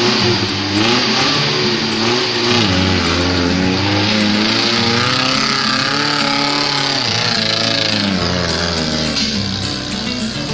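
Off-road 4x4's engine revving up and down again and again as the vehicle works through mud.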